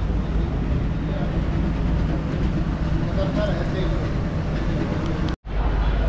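Town street ambience: a steady low rumble, with faint voices of passers-by talking. A brief dropout to silence about five seconds in.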